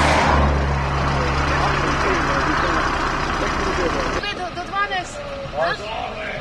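A motor vehicle's engine running with a steady low hum, with voices faint behind it. It cuts off suddenly about four seconds in, leaving people talking.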